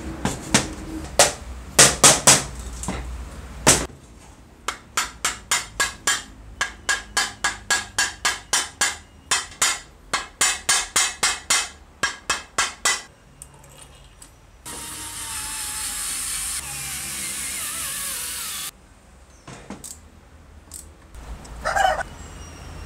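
Hand-tool work on the metal parts of an electric hand plane being reassembled. First come several loud knocks, then a long run of sharp, evenly spaced taps at about three a second, then about four seconds of steady hiss.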